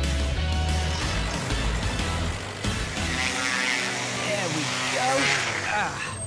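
A cartoon backhoe loader's engine rumbles low under background music for the first two seconds or so, then fades out while the music carries on, with voices sounding near the end.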